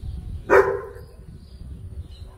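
A dog barks once, sharply, about half a second in, with wind rumbling on the microphone.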